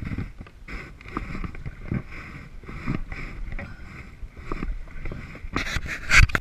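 Small waves slapping and lapping against a plastic kayak hull in choppy water, over a low irregular rumble. Sharp knocks of handling on the kayak come near the end.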